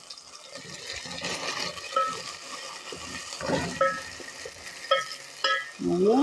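Carrots, onion and tomato paste sizzling in oil in a metal pot while a spatula stirs them. The spatula knocks against the pot several times with short ringing clinks.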